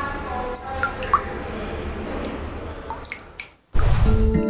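Water drops plinking at irregular intervals over a low, steady rumble with a few held tones. The sound fades out about three and a half seconds in, and a sudden low boom comes just before the end.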